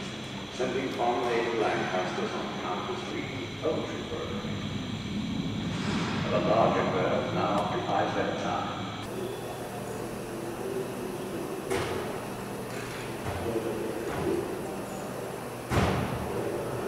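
Indistinct voices of people talking in a workshop, over a steady background hum.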